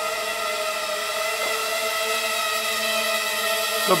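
Racing quadcopter's Emax MT2204 2300KV brushless motors spinning Gemfan 5x3 three-blade props: a steady buzz of several tones that holds its pitch.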